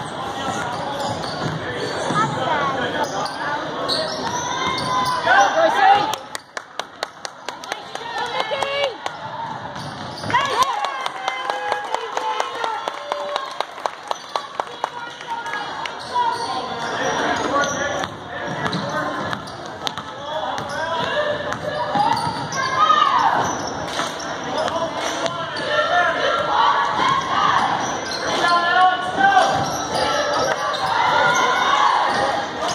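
Basketball dribbled on a hardwood gym floor: two runs of evenly spaced bounces in the middle, echoing in the hall, over the chatter and calls of spectators and players.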